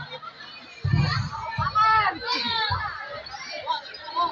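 Children's voices shouting and chattering over a crowd, with a few dull low thumps.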